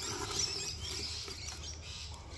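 Dry grass rustling and scratching against a plastic tub as a gloved hand rummages in it to grab a blue-tongued lizard, with small birds chirping in the background.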